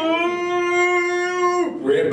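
The voice of Crush, the animated sea turtle, over the theater speakers holding one long shout at a steady pitch for about a second and a half as he swims toward the screen. It cuts off shortly before the end, followed by a brief rush of breathy sound.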